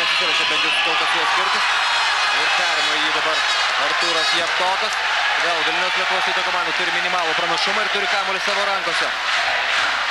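Arena crowd chanting loudly in a repeated rhythm and cheering at a basketball game, with a basketball being dribbled on the hardwood court.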